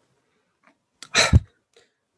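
A single short, sharp breath noise from a man, about a second in. It is a quick, forceful exhale or stifled sneeze-like burst lasting under half a second.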